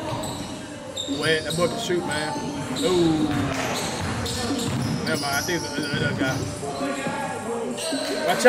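Basketball dribbling, repeated bounces of the ball on a hardwood court, mixed with players' voices calling out during a pickup game.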